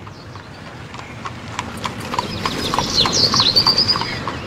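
Sound effect of a horse's hooves clip-clopping at a walk, pulling a cart, getting louder as it approaches. A high-pitched squeal comes over the last second.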